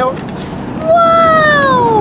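A woman's long, drawn-out 'uwaaoh!' exclamation, starting about a second in, with its pitch sliding steadily down over a little more than a second.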